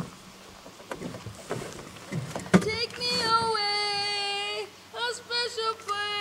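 A high voice singing long, steady held notes, starting about halfway through. Before that, a few faint knocks.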